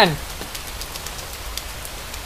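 Steady rain falling on a wet lawn and patio, an even hiss.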